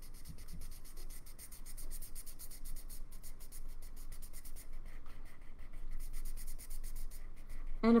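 Felt-tip marker scribbling on paper in rapid, evenly repeated back-and-forth strokes, colouring in an area.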